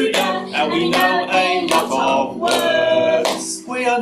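A man singing a comic team song while strumming a small acoustic guitar, with the singing running on without a break.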